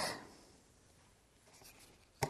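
Near silence: faint room tone, with a faint brief rustle near the end.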